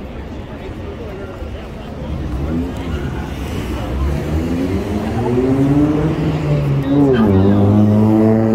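A car engine on the boulevard revving, its pitch rising slowly and growing louder, then dropping back and holding steady near the end. Underneath is the chatter of a sidewalk crowd and the rumble of traffic.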